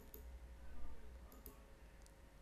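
A quiet pause: a low steady background rumble with a few faint, sharp clicks, one just after the start and a pair about a second and a half in.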